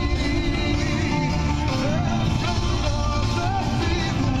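A song with a singing voice and a steady bass line, playing on the car radio.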